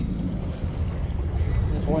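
Steady low rumble of a fishing boat underway, its motor running with wind buffeting the microphone. A man's voice starts speaking at the very end.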